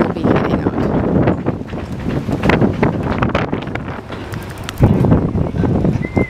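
Wind buffeting the camera microphone: an irregular rumble that rises and falls in gusts.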